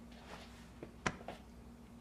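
Quiet room tone with a low steady hum, broken by one sharp click about a second in and a few softer ticks around it.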